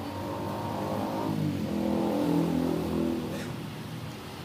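A motor vehicle's engine passing by on the street, accelerating. Its note dips about a second and a half in, then builds to its loudest just past the middle before fading.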